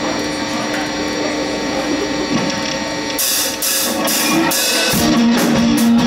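Live rock band between song sections: a held, sustained note over a busy texture, then a few cymbal crashes about half a second apart from about three seconds in. The full band, drums and strummed electric guitar, comes in loudly about five seconds in.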